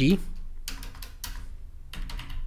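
Computer keyboard being typed on: about three separate keystroke clicks, spaced roughly half a second apart.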